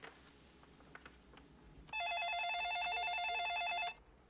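Electronic desk telephone ringing with a rapid warbling trill, one ring lasting about two seconds from halfway through. Before it, faint tapping on a computer keyboard.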